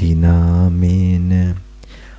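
A man's low voice chanting in Pali in Buddhist devotional recitation, holding one long, even syllable for about a second and a half before breaking off.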